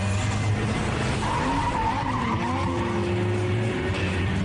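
Car tyres squealing in a skid, a high wavering screech from about a second in until about three seconds, over the steady running of car engines.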